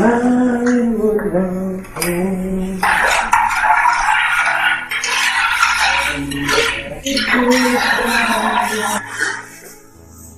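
A woman singing a melody, with long held notes at first, then louder and fuller from about three seconds in, breaking off shortly before the end.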